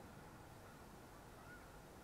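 Near silence: faint outdoor background hiss, with one very faint short rising note about one and a half seconds in.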